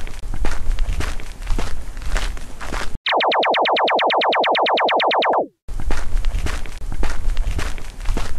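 Sound effects on a stop-motion soundtrack: a rapid buzzing burst of about a dozen pulses a second lasts some two and a half seconds and drops in pitch as it cuts off. A noisy, crackling stretch comes before and after it.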